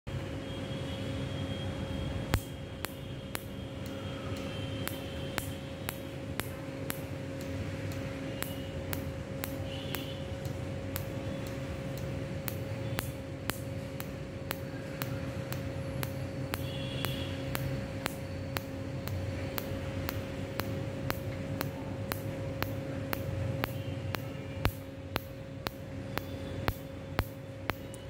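Tattoo-removal laser firing pulses, each one a sharp snap, at an even pace of about two a second starting a couple of seconds in. Under the snaps runs the steady hum of the laser machine's cooling.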